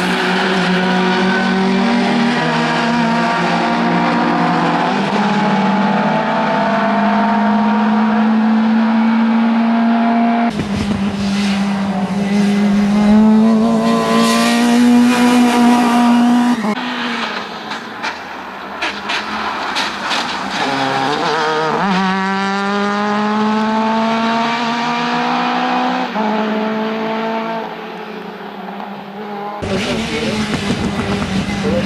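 Fiat Punto Abarth race car's engine revving hard through the gears. Its pitch climbs, then falls back at each upshift, and the sound changes abruptly a few times.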